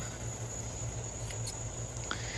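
Steady, high-pitched chirring of crickets, with a couple of faint clicks about one and a half seconds in.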